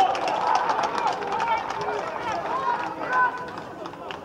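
Several footballers' voices shouting and yelling over one another on an open pitch, excited cries that fade toward the end, apparently celebrating a goal just scored.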